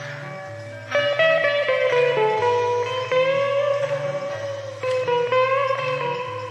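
Electric guitar playing a lead improvisation of held, bending notes over a steady organ-style bass line, with a new phrase picked about a second in and another about five seconds in.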